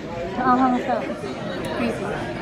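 A voice says a few words over the steady background chatter of a restaurant dining room.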